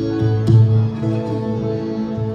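Instrumental introduction to a Bengali folk song: harmonium holding steady chords, with tabla strokes and a strong stroke about half a second in.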